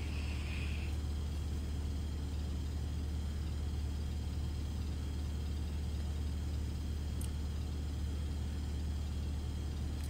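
Steady low hum with a faint even hiss, unchanging throughout, with a faint high tone in the first second.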